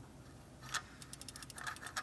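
Faint clicking of a ratchet wrench tightening the new EGR valve's mounting bolts: a single click, then a quick, even run of clicks about a second in, and a few more toward the end.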